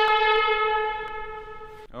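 Handheld canned air horn giving one long, loud, steady blast at a single pitch, which weakens over its last second and cuts off abruptly just before a word is spoken.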